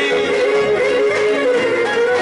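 Live Pontic folk dance music: the Pontic lyra plays an ornamented melody line over keyboard and a steady daouli drum beat, in an instrumental phrase with no singing.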